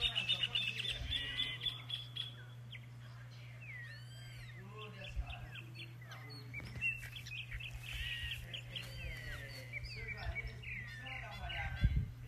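Several wild birds singing and calling together, a busy mix of quick chirps and short arched whistled notes, over a steady low hum.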